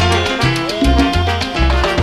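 Live salsa band playing an instrumental passage: the horn section over a steady bass line and percussion hits.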